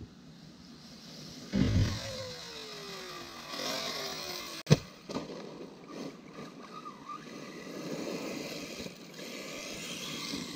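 A 1/8-scale RC buggy with a 2250kv brushless motor running over gravel, its motor whine falling in pitch over a couple of seconds. About halfway through there is a single sharp, loud impact crack, then fainter running and scraping noise.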